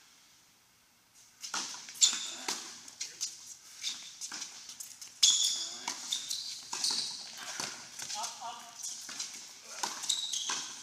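Tennis balls struck by rackets and bouncing on a hard court during a doubles rally, mixed with sneakers squeaking on the court surface. The hits begin about a second in, after a short quiet stretch, and come at an irregular pace.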